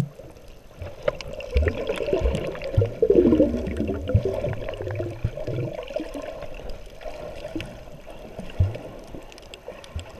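Water sloshing, gurgling and splashing, muffled as heard by a waterproof camera at the surface dipping in and out of the water, with irregular low thumps as a snorkeler kicks close by. The sound is busiest in the first half and eases off later.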